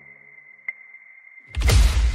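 Trailer sound design: a thin, steady high tone with a soft ping about once a second, then a sudden loud whoosh-and-boom hit about one and a half seconds in, leaving a deep rumble.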